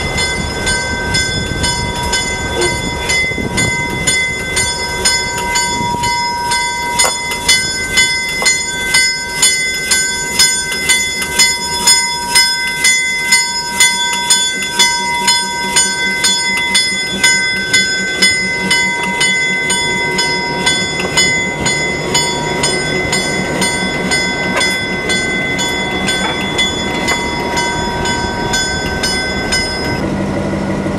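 A diesel locomotive's bell ringing in a steady rhythm, just under two strokes a second. The strokes grow loudest midway as the Western Pacific locomotive rolls slowly past, with a low engine rumble beneath.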